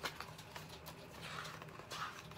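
A picture book's paper page being turned by hand: a sharp tap at the start, light handling clicks, then a soft rustle of sliding paper a little past the middle, ending in another tap.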